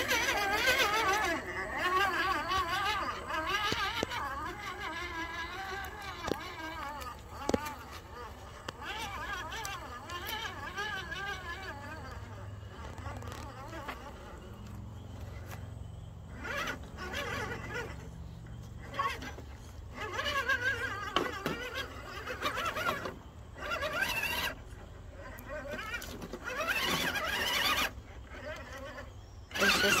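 Electric motor and geared drivetrain of an RC4WD Gelände II 1:10 scale crawler whining under throttle as it climbs a loose dirt and rock slope, the whine rising and falling in pitch, with a few short clicks from the tyres and chassis on rock.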